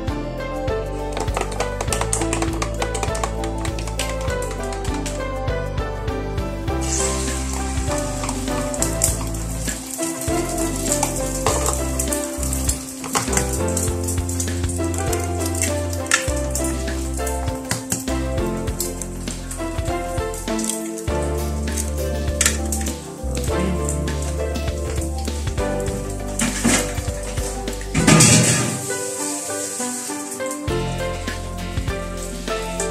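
Food sizzling as it fries in a pan, the hiss growing clearer about seven seconds in, with a louder burst of sizzling about two seconds before the end. Background music with a bass line plays under it.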